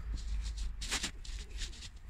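Soft rustling and light handling noises from a small greasy metal steering-rack slipper being moved about on a cloth towel, with one slightly louder brush about a second in, over a low steady hum.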